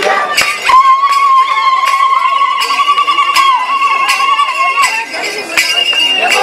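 Turkana traditional dance performance: the group singing gives way to one long, high note held for about four seconds, with a shorter higher note near the end, over sharp rhythmic clinks about twice a second.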